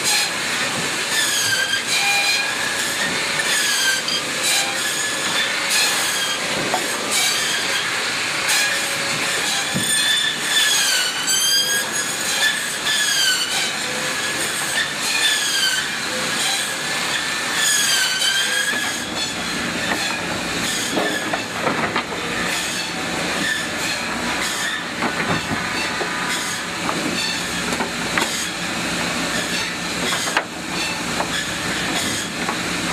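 Large open circular saw in a shingle mill cutting thin shingles from wood blocks. Its high whine dips in pitch each time a block is pushed into the blade and climbs back as the cut finishes, every second or two. In the last third the whine fades under a lower, rougher running machine.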